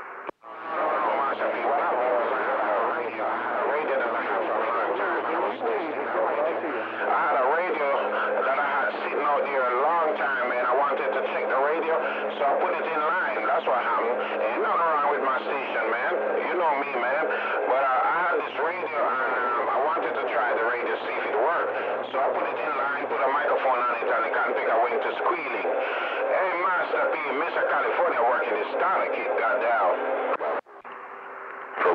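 A distant station's voice coming in over an AM radio receiver, band-limited and hard to make out, with a low steady hum under it that drops out about halfway through.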